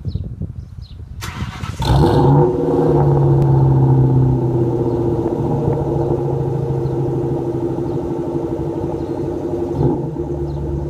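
Ford Mustang Mach 1's 4.6-litre DOHC V8, through an SLP Loudmouth 1 exhaust with an off-road X-pipe, being cranked by the starter for about a second, catching with a loud rev flare, then settling into a deep, steady idle.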